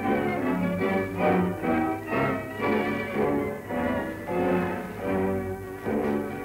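Orchestral closing music, bowed strings carrying a melody, on a 1931 sound-film track with a steady low hum beneath.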